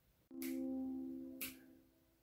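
Ukulele C major chord plucked softly, the 4th, 2nd and 1st strings pulled together in the Puxa 3 fingerpicking pattern, ringing and fading over about a second. A short click follows near the end.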